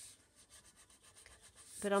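Bone folder rubbing faintly along the inside of a cardstock box, pressing a wet-glued reinforcing strip down.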